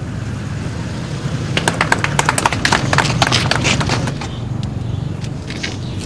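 A small seated audience clapping, starting about a second and a half in and dying away about four seconds in, over a steady low hum.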